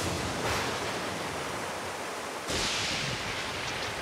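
Storm sound effect of heavy rain and rushing floodwater, a steady hiss that swells again about two and a half seconds in.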